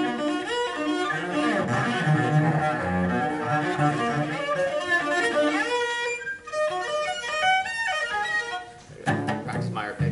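Solo cello played with the bow: a quick run of notes, low and full for the first half, then climbing into high notes. The playing stops about nine seconds in.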